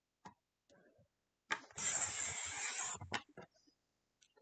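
A wavy-edge paper trimmer's cutting head pushed along its track, slicing a narrow wavy strip from patterned scrapbook paper. It starts with a click about one and a half seconds in, scrapes steadily for just over a second and ends with a couple of clicks.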